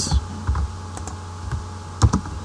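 A few scattered clicks of a computer keyboard and mouse as code is selected, copied and the cursor placed, over a steady low hum.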